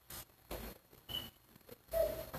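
Quiet room with a few brief soft rustles and light knocks, as of people shifting and moving about.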